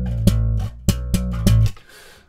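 Electric bass guitar played through a bass amp plugin modelled on an old Ampeg, set for a scooped, trebly tone: several sharply plucked low notes in quick succession, stopping shortly before the end.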